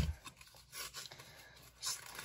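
A sharp knock at the very start, then faint, scattered rustles and scrapes of hands working at a sealed trading-card pack's wrapper.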